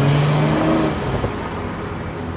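Camouflaged prototype of the new Toyota Supra driving past, its engine note steady and then fading about a second in as the car pulls away.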